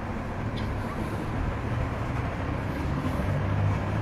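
Steady low background rumble and hiss, growing slightly louder toward the end, with a couple of faint clicks.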